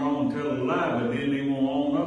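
A man's voice talking in a drawn-out, fairly level tone, close to the microphone.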